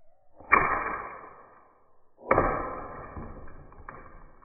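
Slingshot shot striking the target area: two sharp impacts a little under two seconds apart, each ringing on with steady tones and dying away over a second or so.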